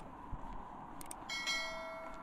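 Subscribe-button animation sound effect: a mouse click, another click about a second in, then a bright notification-bell ding that rings on past the end, over faint street ambience.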